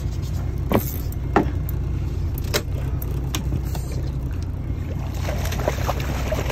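Steady low hum of an idling boat motor, with a few sharp knocks spread through it.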